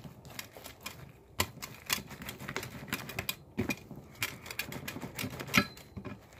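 Hands crinkling and tapping a pink, crinkly material on a glass tabletop: a fast, irregular string of sharp clicks and crackles, with one louder snap near the end.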